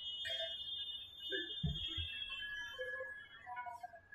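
Quiet room sound with a faint, steady high-pitched electronic tone and a few faint, indistinct short sounds in the middle.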